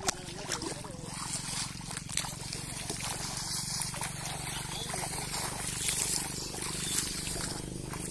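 Shallow water sloshing and splashing as someone wades through a flooded rice field pushing a bamboo-framed push net, with small irregular splashes throughout.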